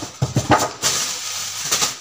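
Handling noise from a grey packaging bag being opened: a few sharp knocks, then about a second of rustling.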